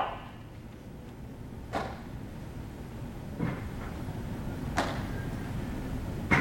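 Baseballs popping into a catcher's mitt three times, sharp short smacks about a second and a half apart, over a low steady room hum.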